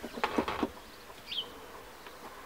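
A hand gripping and lifting the edge of a wet rubber van floor mat, a few short rustles and clicks in the first half-second. Near the middle there is a single faint high chirp.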